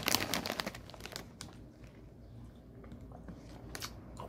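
Crinkling of a plastic Funyuns snack bag being opened and handled, dense for about the first second, then a few scattered crackles.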